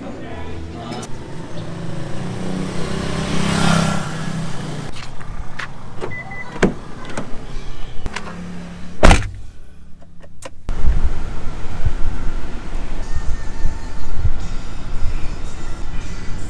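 Car sounds from inside the cabin: scattered clicks, a brief high beep and a loud sharp thump. After a cut, the steady low rumble of the car on the move.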